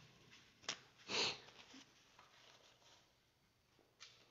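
A small sharp click, then a short nasal sniff a second in.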